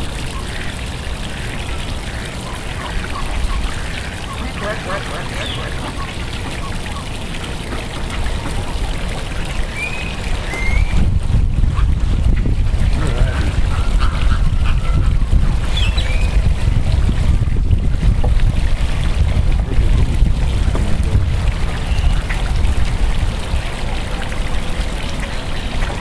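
A flock of flamingos calling, a few short calls over a steady outdoor background. From about eleven seconds in, a low rumble of wind on the microphone joins in.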